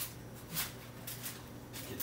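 Hands working a raw whole chicken in a foil-lined pan, pushing stuffing up into it: soft squishing with a string of faint crinkles.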